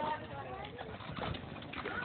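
Faint, distant voices of people talking outdoors.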